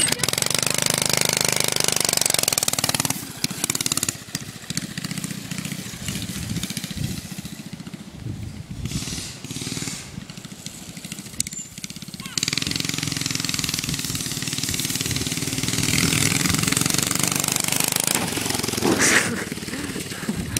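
Small go-kart engine running hard as the kart pulls away, loud for the first few seconds and then fading as it drives off, with a louder noisy stretch again from about two-thirds of the way in.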